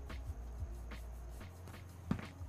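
Flat paintbrush scrubbing acrylic paint onto canvas in short, quick strokes, about three a second, over a low steady hum.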